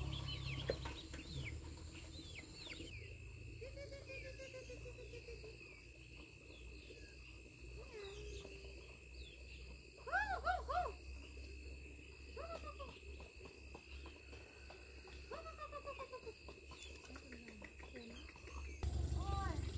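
Chickens calling: high, short peeps from chicks and lower calls from hens, with the loudest quick series of calls about ten seconds in and scattered calls after it.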